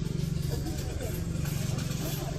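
A steady, low engine hum, like a motor idling, with faint voices over it.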